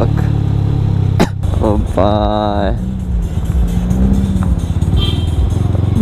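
Yamaha sport motorcycle's engine running at low revs under steady wind rumble on the rider's microphone, easing off as the bike slows. A short pitched, voice-like sound comes in about two seconds in.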